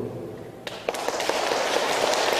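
An audience breaks into applause about two-thirds of a second in, many hands clapping steadily.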